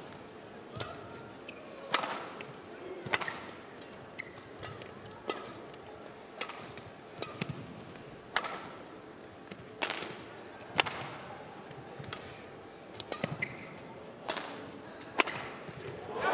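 Badminton rally: rackets striking the shuttlecock back and forth, a sharp crack roughly once a second, about a dozen hits in all.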